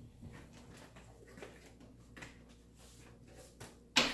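Faint, irregular knocks and shuffles of a person getting up and moving about a small room, ending in one sharp, louder knock near the end.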